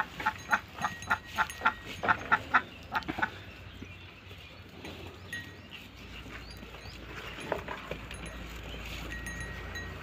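Sheep pulling and chewing fodder at a wooden rack feeder: a quick run of crunching, tearing crackles, about three or four a second, for roughly the first three seconds, then quieter, scattered munching.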